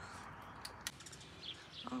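Faint outdoor background with a few soft bird chirps and a couple of small clicks during a pause in speech.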